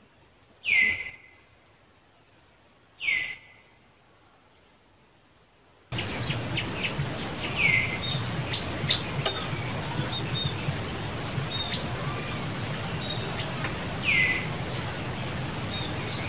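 A bird's short whistled call falling in pitch, repeated four times at uneven intervals. About six seconds in, a louder steady background of outdoor noise with many small chirps and clicks starts suddenly.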